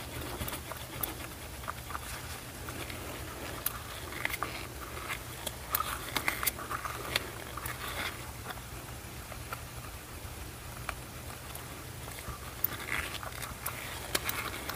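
A spatula stirring UV resin and fine glitter in a small plastic mixing cup: irregular light scraping and ticking against the cup, over a low steady hum.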